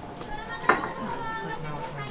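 Voices of a crowd of onlookers talking and calling out, with a single sharp smack about two-thirds of a second in, as the mochi dough is handled in the wooden mortar.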